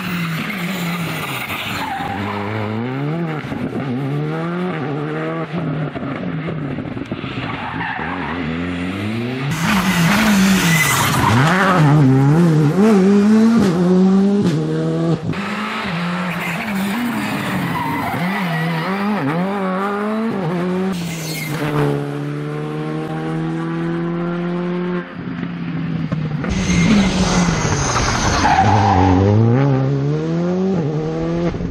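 Rally car engine revving hard, its pitch climbing and dropping again and again through rapid gear changes, with a steady held note for a few seconds past the middle. Bursts of tyre skidding come as the car slides through tight hairpins.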